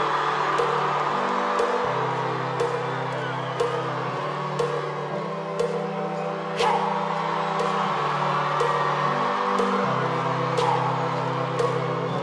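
Live band playing a pop song's instrumental intro: sustained synth bass notes shifting every couple of seconds over a steady beat, with a large crowd cheering throughout.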